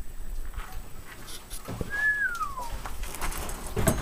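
A single high whistled animal call about two seconds in: it holds briefly, then slides down in pitch.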